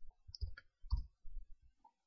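A computer mouse clicking several times in quick succession, short sharp clicks.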